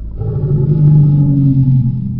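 A man's long, low, drawn-out groan of dismay, held on one slightly falling pitch, as a hooked fish throws the hook.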